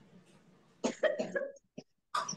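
A person coughs about a second in, a short sharp burst followed by a brief voiced trailing sound.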